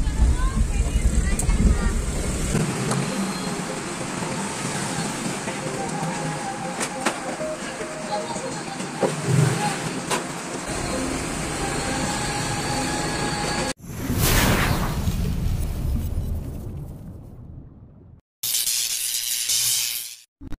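Low rumble of a car driving, heard from inside the cabin, then outdoor street noise with a few knocks. About fourteen seconds in, an abrupt cut brings a whoosh sound effect that swells and fades, then after a brief silence a loud burst of intro sound effect and music.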